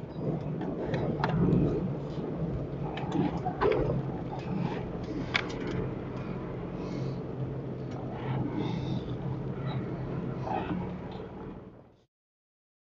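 Jeep engine running steadily under way on a dirt track, with tyre and road noise and scattered clicks and knocks from the vehicle's body, fading out near the end.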